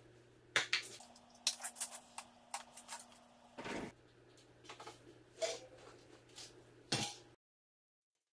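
Scattered short clicks, clinks and knocks of hand tools and bicycle parts being handled as a mountain bike is taken apart, in a few short snippets over a faint steady hum; the sound stops dead near the end.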